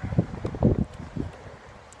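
Low, irregular bumps and rustling on the microphone, from wind and from handling while a can is picked up; busiest in the first second, then quieter.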